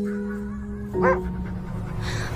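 Sustained trailer-music chord holding and slowly fading, with one short, steeply rising whimper from a wolf about a second in.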